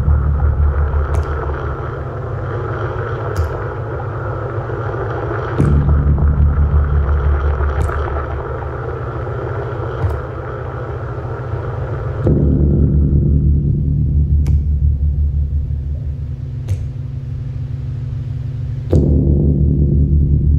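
Live electronic synthesizer music: a heavy, rapidly pulsing low bass tone that comes in again about every six or seven seconds and fades between, with a sharp click about every two seconds. A hissing mid-range wash above it cuts out about twelve seconds in.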